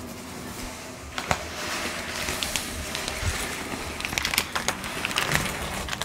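Hands handling the screen's accessories and packaging: an irregular run of rustling, crackling and small clicks.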